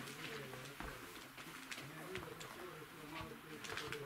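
Low murmured voices of several people talking quietly in a small room, with a few small knocks and shuffles of people moving about.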